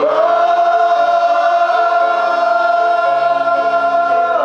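Live rock band with a male lead singer holding one long note, while the band's chords change beneath it.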